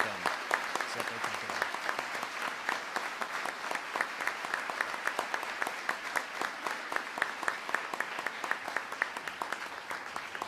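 A large audience applauding steadily, many hands clapping together.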